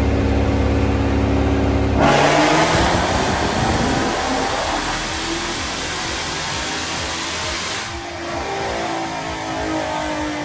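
Roush-supercharged 2022 Ford Mustang GT's 5.0-litre V8 on a chassis dyno during its first tuning pass after a fueling retune: a steady engine tone, then about two seconds in a loud full-throttle pull that fades off by about eight seconds.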